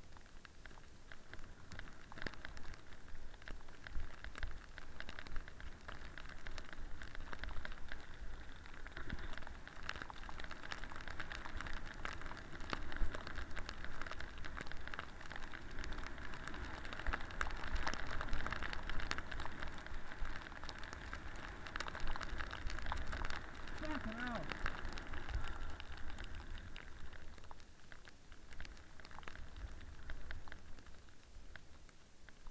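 Snowboard sliding through snow close to the camera: a dense crackling hiss with scattered clicks, easing off near the end.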